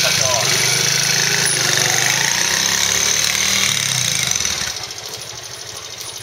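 The single-cylinder four-stroke engine of a Honda Magna 50 fitted with a Daytona bore-up cylinder kit, held loud at high revs, then dropping back to a quieter, steady low idle near the end.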